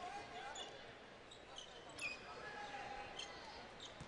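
Quiet basketball-arena background with faint voices, and a single basketball bounce on the hardwood floor about two seconds in.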